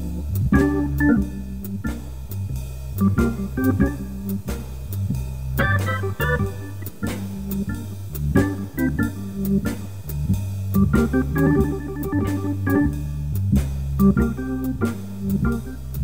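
Hammond organ jazz record: a walking bass line of low notes changing about twice a second, under short organ chords and quick runs, with drums keeping time.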